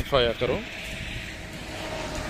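A man's voice for the first half second, then the steady hiss of a vehicle passing on the highway beside the field.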